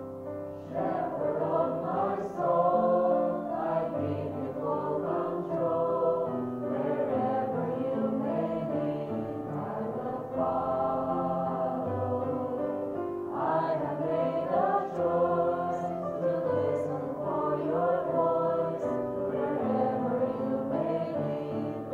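A small group of female voices singing a gospel worship song together, coming in about a second in over sustained keyboard accompaniment.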